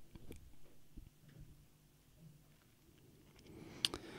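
Quiet room tone with a faint low hum and a few soft clicks, one a little sharper near the end.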